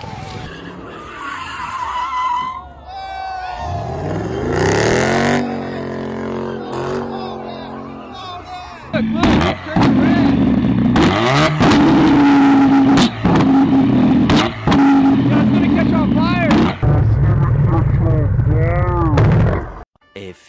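A car engine revs up in rising sweeps, then is held at high revs with sharp cracks and pops from the exhaust as it spits flames. A loud low rumble follows near the end.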